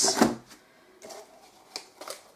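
A cardboard drawer being pushed into its slot in a cardboard organizer: faint scraping and light taps of cardboard on cardboard, with a short sharp click near the end.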